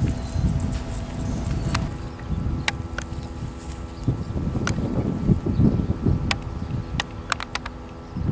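Wind buffeting the microphone as an uneven low rumble, with a handful of sharp clicks scattered through it, several in quick succession near the end.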